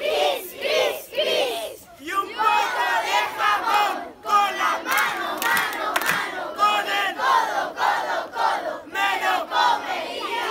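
A crowd of young voices shouting and yelling all at once, many high calls overlapping, with brief lulls about two and four seconds in.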